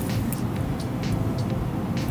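Steady low rumble of background noise with faint sustained tones above it, unchanged through the pause.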